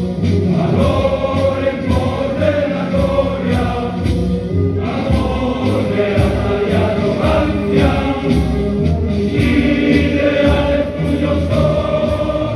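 A large group of men singing a solemn hymn together in chorus, sustained and steady.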